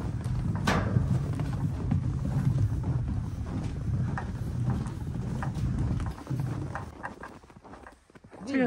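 Footsteps crunching on snow, first on a snow-covered steel footbridge and then on snowy ground. Under them is a low steady rumble that dies down about six seconds in.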